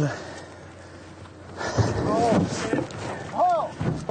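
Raised, shouting voices in short, high-pitched calls, over a wash of movement noise. The calls come mostly in the second half.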